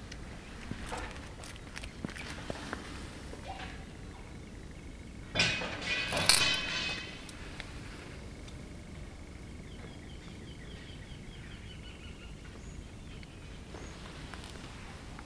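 Footsteps and handling noise from a handheld camera walking around a tomb, with faint scattered clicks. About five seconds in comes a louder burst of noise lasting under two seconds.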